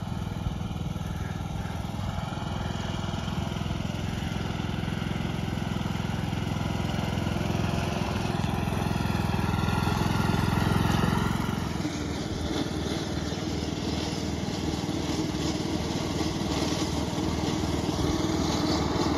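Craftsman LT2000 riding lawn mower running with its blades cutting through tall timothy grass and clover. It grows louder until about two-thirds of the way through, then drops and becomes more uneven.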